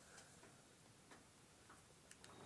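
Near silence with a few faint, scattered clicks.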